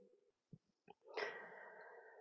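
A man's faint inhaled breath, drawn about a second in, before he speaks again; two small mouth clicks come just before it.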